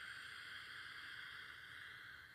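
A woman taking a slow, steady breath in through her nose, heard as a soft airy hiss, on a guided breathing count.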